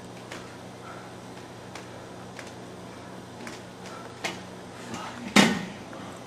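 A steady low room hum with faint scattered clicks, a small knock about four seconds in, then one loud, sharp knock with a brief ring about five and a half seconds in.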